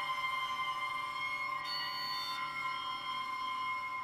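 Guitar strings bowed with a cello bow: a sustained, droning chord of steady high tones. A thin higher overtone comes in briefly about halfway through.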